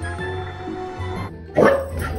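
Background music, cut off about a second and a half in by a sudden loud bark from a dog.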